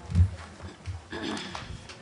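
Low thumps and knocks picked up by a table microphone as people sit down and move things about on the conference table, the loudest one just after the start.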